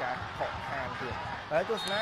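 Speech: a sports commentator talking over the match broadcast.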